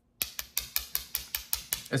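Small aluminum tactical flashlight handled in the fingers, giving a quick, even run of light metallic clicks, about seven a second.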